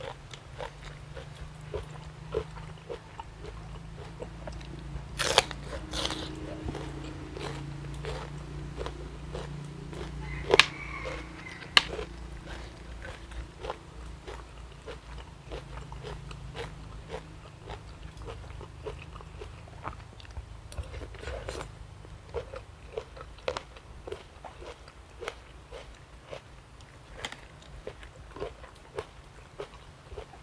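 Close-up chewing and crunching of crisp food: crunchy sai tan pork offal and raw vegetables, with small wet mouth clicks throughout. A few sharper, louder clacks stand out near the middle.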